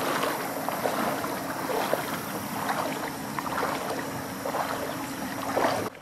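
Shallow river water splashing and gurgling in many small irregular splashes, over a faint steady hum.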